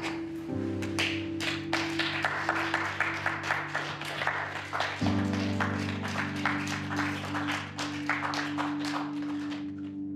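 A small group applauding, with dense irregular clapping, over background music of sustained chords that shift about half a second in and again about five seconds in.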